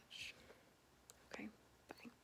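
Near silence with faint, breathy whispered speech sounds: a short hiss at the start, a soft voiced breath partway through, and a few small clicks near the end.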